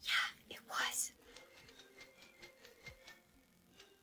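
A person whispering in two short breathy bursts in the first second, then near silence.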